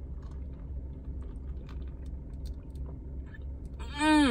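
Boba tea being sipped and chewed through a straw, with faint scattered small clicks, over a steady low rumble in a car cabin. Near the end comes a loud appreciative 'mmm' that falls in pitch.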